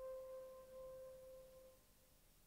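A single held instrumental note, almost a pure tone, dying away and gone shortly before the end.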